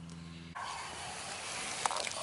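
A low steady hum stops abruptly about half a second in and gives way to a steady outdoor hiss, with a couple of faint clicks near the end.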